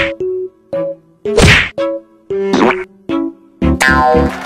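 Edited-in comedy sound effects: short plucked musical notes alternate with three loud whack hits about a second apart, and fuller music starts near the end.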